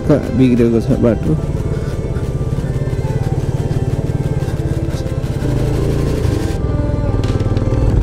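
Motorcycle engine running at low speed, its firing pulses even and steady, as the bike rolls along a rough road. A voice over music is heard briefly at the start.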